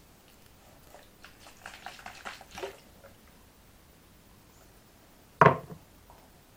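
Short crackling and clicking as a piece of candy is handled, then a single loud thump near the end.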